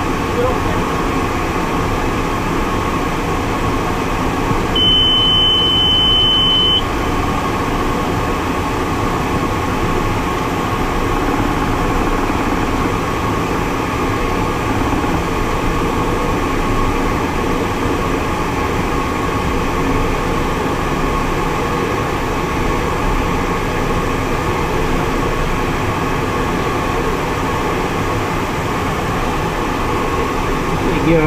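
Steady cockpit noise of a jet in flight: an even rush of airflow and engine drone. About five seconds in, a single steady high-pitched beep sounds for about two seconds, a cockpit alert tone.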